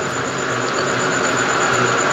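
Steady outdoor background noise: an even hiss with a faint low hum, no distinct events.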